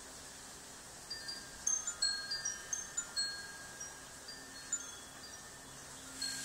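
Wind chimes tinkling: a scatter of short, high, ringing notes at many different pitches, starting about a second in and thinning out by about five seconds, over a faint steady hiss.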